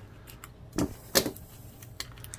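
Plastic blister packaging crackling and clicking as diodes are pushed out of the card, with two short sharp sounds a little under a second in and again just after a second.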